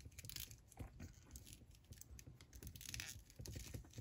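Faint scattered clicks and scrapes of hands handling and posing a plastic S.H. Figuarts Kamen Rider Vice action figure, its joints being moved.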